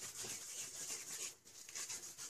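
Hands rubbing a spice paste into a raw lamb shoulder, a faint, soft rubbing with a brief pause about one and a half seconds in.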